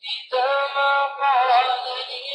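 A short melodic phrase of held, high-pitched notes, like singing or an electronic tune. It starts about a third of a second in, with a dip in pitch around the middle.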